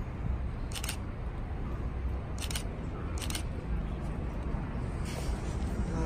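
Three short, sharp clicks, about a second in, at two and a half seconds and just after three seconds, over a steady low outdoor rumble on a handheld phone microphone.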